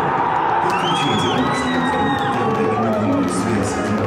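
A group of footballers cheering and shouting together in a celebration huddle, with a long high-pitched cry over the middle of it and music playing along.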